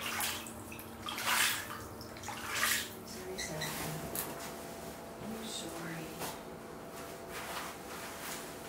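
Water sloshing and splashing as a hand swishes through a shallow standing pool in an artificial rock stream, two strong swishes in the first three seconds and a few weaker ones after.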